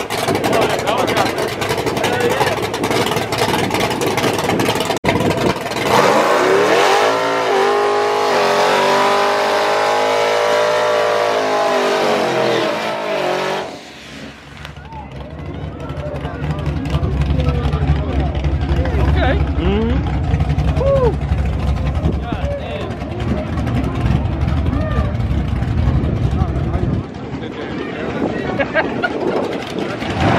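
A car doing a tire-smoking burnout: the engine revs high, its pitch climbing, holding and then falling over several seconds, followed by a loud low engine rumble.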